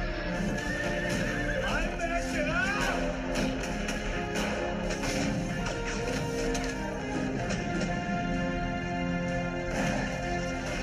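Film score music playing, with a horse whinnying about two seconds in.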